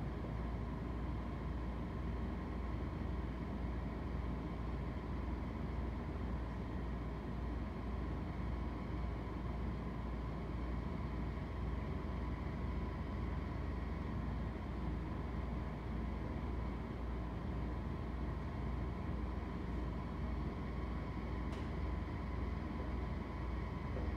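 Steady low room hum with a faint hiss, unchanging throughout.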